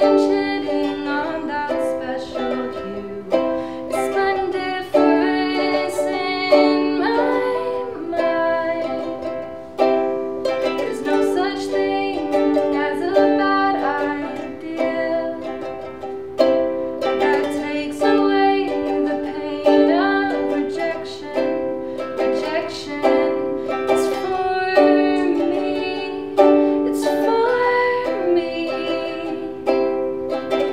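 A ukulele playing a tune in chords, with a new chord or note group struck about once a second.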